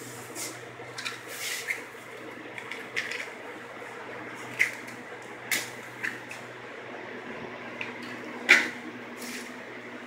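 Gas stove burner being lit under a pot of water: a few short, sharp clicks over a low steady hum, the loudest click near the end.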